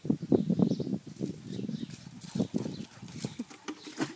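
Stabij dogs playing: low, rough growling noises and scuffling on brick paving, densest in the first second, then scattered short thuds.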